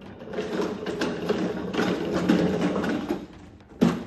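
Plastic wheels of a Little Tikes toy shopping cart rattling as it is pushed over a tiled floor, stopping with a thump near the end.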